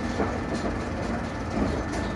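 Steady running noise inside a moving passenger train carriage: the rumble of the wheels on the rails and the car body, with faint clicks from the track.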